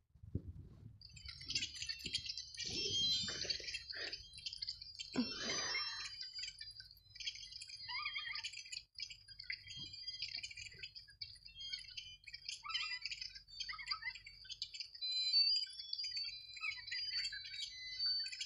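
Small birds chirping, many short high chirps overlapping without a break, over a steady low hum. A few lower, louder sounds come in the first six seconds.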